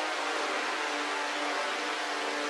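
Sustained synthesizer pad chords in C minor with a washed-out, hissy haze, held steady with no drums: the intro of a rage-style trap beat.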